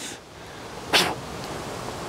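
Metal branding iron drawn out of the opening of a small wood-burning stove, with a short sharp scrape about a second in, over a steady hiss.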